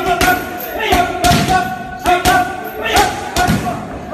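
Punches and kicks landing on handheld Muay Thai pads and a trainer's belly pad: a run of sharp smacks, several of them at about one a second, some in quick pairs.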